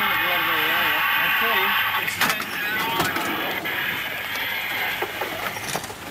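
Indistinct voices inside a moving van, over steady vehicle noise. A wavering pitched sound runs through the first two seconds, and a few sharp knocks come later.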